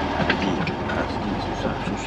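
Classic Fiat 500's small engine running as the car pulls away, heard from inside the open-roofed cabin.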